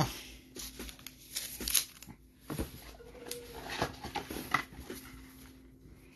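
Trading cards and a clear plastic card holder being handled: scattered light clicks and taps with brief plastic rustling as a card is slid into the holder.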